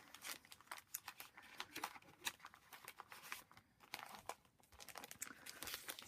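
Faint, irregular crinkling and rustling of a plastic pocket-page sleeve and small paper envelopes being handled.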